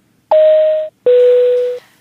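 Airliner cabin PA chime: two electronic notes, a higher one and then a lower one, each just under a second long. It is the signal that a cabin announcement is about to follow.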